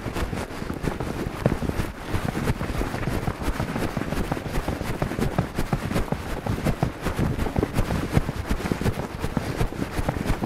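Hoofbeats of a horse trotting on soft, wet pasture, mixed with wind buffeting the microphone.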